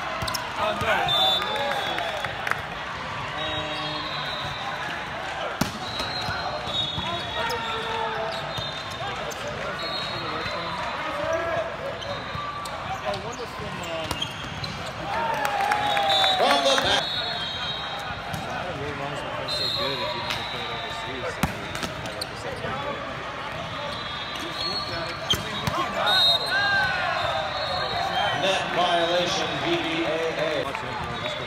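Echoing hubbub of an indoor volleyball match in a large hall: many players' and spectators' voices, with sharp thuds of the ball being struck. The voices grow louder about sixteen seconds in as a team celebrates a point.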